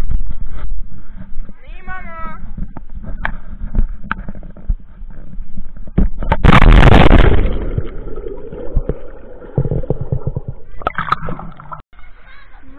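A loud splash about six and a half seconds in, as someone wearing the action camera jumps from a stone quay into the sea. It is followed by muffled underwater gurgling. Before the jump, a heavy rumble of wind and handling sits on the camera microphone, and a child's high voice calls briefly.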